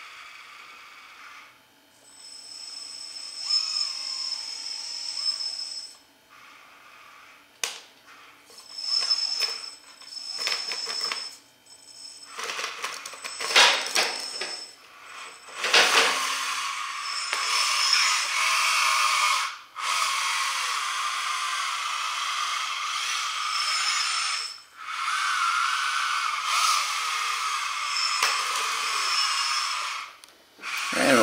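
Small electric motors and gearboxes of an all-metal LESU LT5 RC tracked skid steer whining in stop-and-start runs of a few seconds each, with clicks and metal clatter from the tracks and frame, as it drives off a flatbed deck and maneuvers.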